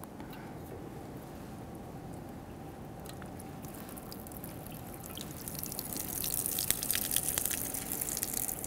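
Thin jets of water from the side openings of a graduated cylinder splashing into a sink. The splashing starts soft and grows louder with a fizzing patter from about halfway through, as the lower openings are unstoppered and all three jets run.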